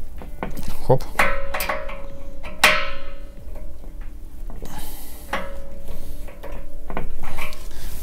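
Steel wrenches clinking and scraping against each other and the brass union nut of a Danfoss radiator valve as the nut is tightened hard. Several sharp metallic clicks ring briefly.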